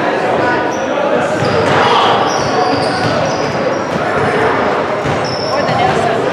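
Echoing gym sound of a youth basketball game: players and spectators calling out, a basketball bouncing on the hardwood floor, and short high sneaker squeaks on the court.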